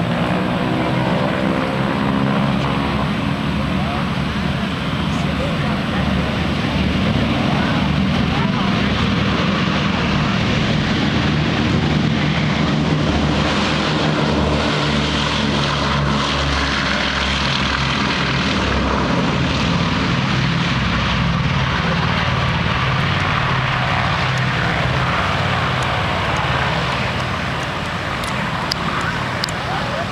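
Boeing B-17 Flying Fortress's four radial piston engines at takeoff power: a heavy, steady propeller drone as the bomber runs down the runway. It grows loudest as the aircraft passes about halfway through, then eases as it lifts off and climbs away near the end.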